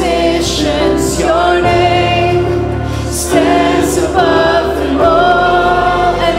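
Live worship band and congregation singing a contemporary worship song: long held sung lines over keyboard and band accompaniment.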